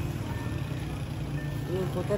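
Two short high beeps about a second apart, from an SUV's power tailgate, over a steady low rumble.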